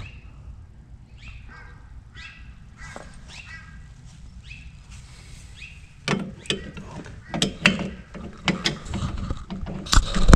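Hand tools working on a car's drum brake: faint, repeated short squeaks for the first few seconds, then a run of sharp metal clanks and knocks from about six seconds in as tools and the brake adjustment tool are handled at the drum.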